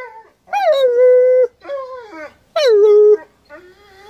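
German Shepherd howling: three drawn-out calls, the first and last held on a steady pitch, the middle one shorter.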